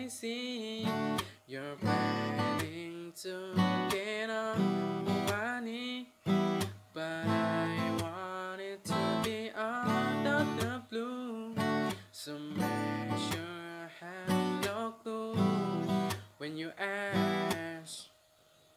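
Acoustic guitar strummed through a repeating Am–D–Bm–Em chord progression in a down-up-stop, down-stop pattern, with short gaps in the rhythm, while a man sings along.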